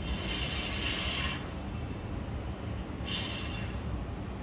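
Two short bursts of hiss, the first about a second and a half long and the second just under a second near the end, over a steady low hum of bench equipment.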